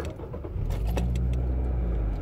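2015 Nissan Micra's four-cylinder engine running, heard from inside the cabin as a steady low hum, with a few light clicks or jingles about a second in.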